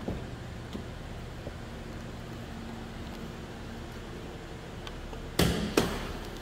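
2009 Pontiac G6 GXP's 3.6-litre V6 idling steadily through its stock exhaust. Near the end come two sharp knocks about half a second apart.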